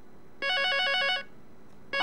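Telephone ringing with one short electronic warbling ring, the tone trilling rapidly between two pitches for under a second: an incoming call on the phone-in line.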